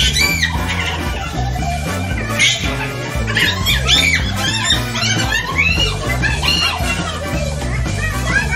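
Background music with a steady bass line, under a group of women's excited high-pitched shouts and laughter.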